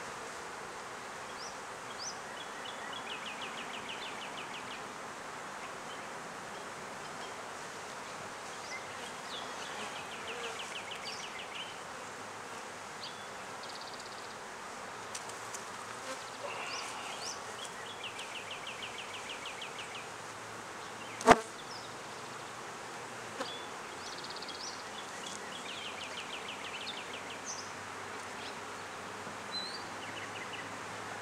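Honeybees buzzing steadily around an opened hive. A single sharp knock comes about two-thirds of the way through, and a short rapid trill recurs every several seconds.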